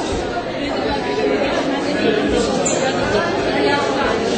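Crowd chatter: many people talking at once in a large hall, a steady mix of overlapping conversations with no single voice standing out.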